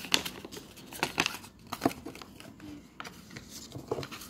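Plastic wrapping of a toy mystery pack crinkling and crackling as it is opened by hand, with a string of sharp crackles and clicks.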